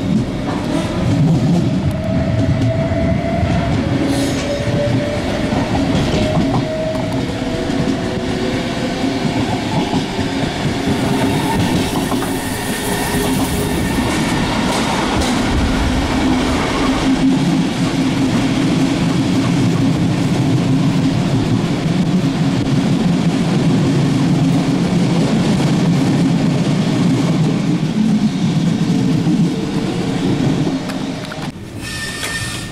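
Running noise inside a German N-type (Silberling) passenger coach on the move: a steady rumble of wheels on track with clicks over rail joints and points, and a faint rising whine in the first several seconds.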